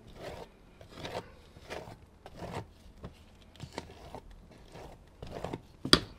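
Dripping wet acrylic paint being scraped off the edges of a canvas: a series of short scraping strokes, roughly one a second, with a sharp click near the end.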